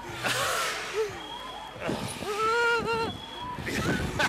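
Riders on a reverse-bungee slingshot ride yelling and whooping, with one long held yell about two seconds in, over the rush of wind on the microphone.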